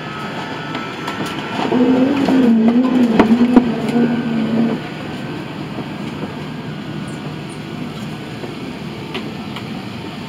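Steady hiss of an Airbus A380 cabin's air conditioning on the ground, with a louder wavering pitched sound for about three seconds in the first half and a few sharp clicks in the middle of it.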